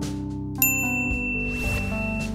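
A single bright ding about half a second in, a notification-style chime that rings on for over a second, over steady background music.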